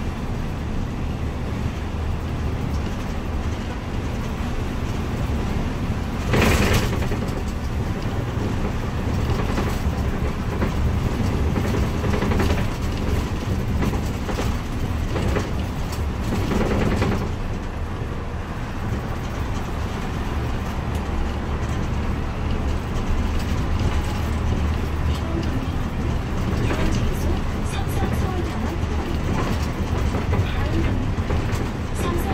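Cabin noise inside a moving city town bus: steady engine and road rumble. A loud clatter comes about six seconds in, with two smaller ones around the middle.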